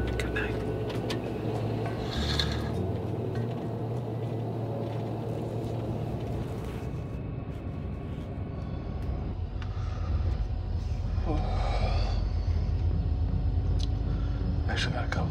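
Steady low rumble of a highway bus in motion, heard from inside the passenger cabin, growing slightly louder in the second half.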